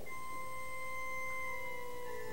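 An organ note starts and is held steady.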